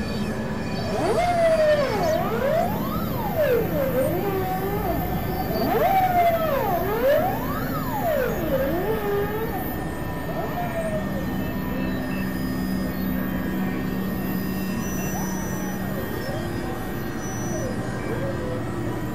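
Experimental synthesizer drone with a siren-like pitched tone sweeping rapidly up and down for about the first half. The sweeps then stop and only the steady low droning tones and hiss remain.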